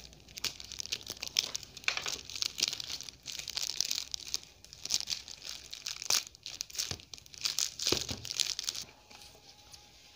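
Clear plastic wrapping being torn and crinkled off a toy box, with dense crackling and many sharp snaps that stop about nine seconds in.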